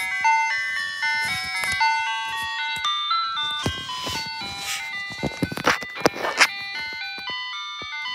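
Electronic ice cream truck jingle from a Kilcar digital music box, a melody of clear chime-like notes, played through a RockJam Sing Cube speaker. Several sharp knocks sound over the tune between about four and six and a half seconds in.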